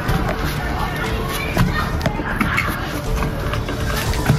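Background music with a faint steady drone.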